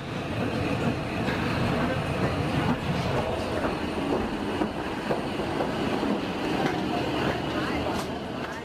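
Boarding ambience in a jet bridge: a steady rumble and clatter of people walking toward the aircraft door, with a murmur of voices.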